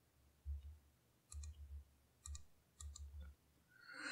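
Computer mouse button clicking faintly several times at irregular intervals, some clicks in quick succession.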